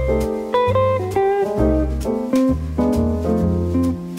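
Background music: a melody of short notes over a pulsing bass line and a light, regular beat.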